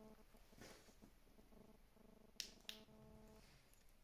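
Near silence with a faint hum that comes and goes, broken by two sharp clicks a quarter of a second apart about two and a half seconds in.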